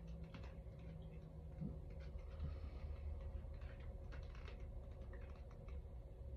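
Faint, irregular light clicks and taps, like typing or small handling noises, over a low steady hum of room noise.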